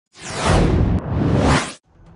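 Two whoosh sound effects in a row from a TV news channel's animated logo ident. Each lasts about a second and swells up, and the second cuts off just before the logo gives way to the report.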